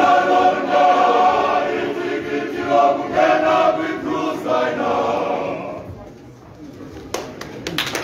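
Male voice choir singing. The sung phrase dies away about six seconds in, and a few sharp knocks follow near the end.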